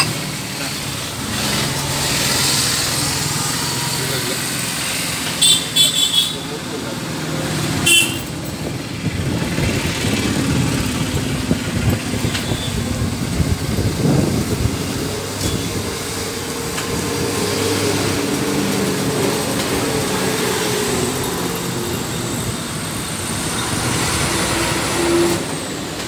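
Roadside traffic ambience: a steady rumble of passing vehicles with voices in the background, and short loud horn toots about five and a half seconds in and again near eight seconds.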